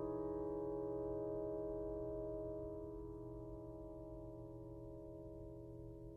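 A held piano chord slowly dying away, its steady tones fading gradually.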